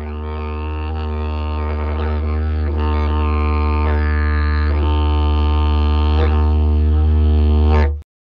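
Didgeridoo playing one continuous low drone with a rich stack of overtones, the upper tones shifting as it is voiced. It slowly grows louder and cuts off abruptly near the end.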